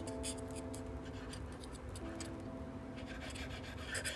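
A steel knife sawing through a baked stuffed mushroom held by a fork, with light scraping and clicking strokes, busiest at the start and again near the end. Soft background music with held notes plays under it.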